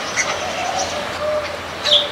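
Rock pigeons cooing low and drawn-out, with short, high chirps of small birds over them; the loudest chirp comes near the end.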